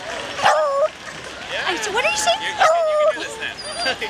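Beagle barking: two short, loud barks about two seconds apart.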